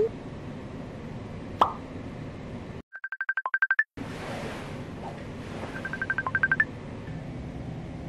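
Electronic alarm beeping: two quick runs of short, high, evenly spaced beeps, about ten to a second, a couple of seconds apart, the second run ending on a higher beep. A single sharp click comes just before them, over faint room tone.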